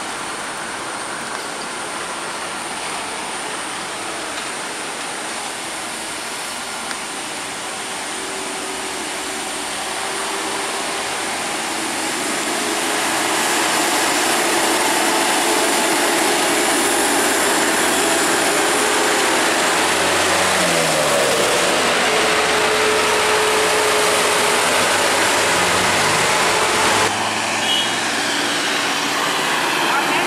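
Heavy buses and trucks climbing a steep hill road, their engines labouring over the tyre and road noise. The sound grows louder about halfway through as a bus draws near. Later the engine pitch falls and then climbs again.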